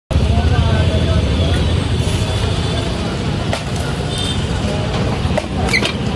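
Busy street sound: a steady rumble of road traffic with indistinct voices, and a few sharp clicks in the second half.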